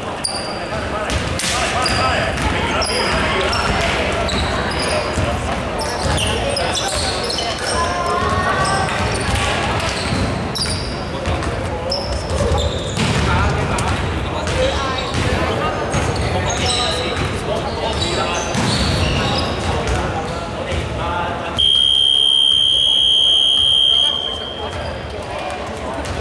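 Basketball game sounds: sneakers squeaking on the hardwood floor, the ball bouncing and players calling out. About 22 seconds in, a loud, steady scoreboard buzzer sounds and holds for a couple of seconds.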